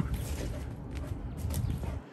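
Low rumble of wind on the microphone, with a few light knocks scattered through it.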